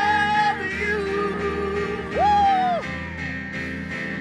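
Gospel worship song: women singing into microphones over instrumental backing, on long held notes with vibrato. A high held note a little past two seconds in is the loudest.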